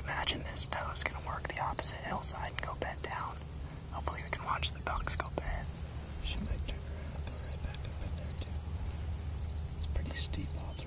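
A man whispering in short, breathy bursts for roughly the first five and a half seconds, then stopping. Under it run a steady low rumble and a faint, high, rapidly pulsing chirr.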